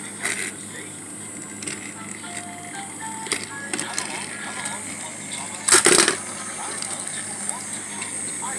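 Battery-powered toy trains running on plastic track, with a steady faint hum and scattered light clicks. A loud knock comes about six seconds in.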